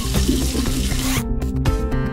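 Water from a tap running into a bathroom sink for about a second, then cutting off suddenly, over a backing track of keyboard music.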